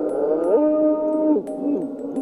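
A ghostly moaning voice: a long wavering "oooo" that rises, holds, then slides down, followed by shorter falling swoops.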